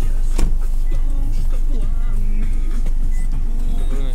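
Inside a car stopped with the engine idling: a steady low hum under music playing from the car radio, with a single sharp click about half a second in.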